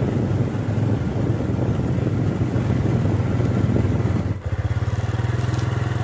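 A motorcycle engine running steadily at low speed. A little over four seconds in there is a brief dip at an edit, after which the engine note carries on with an even, throbbing pulse.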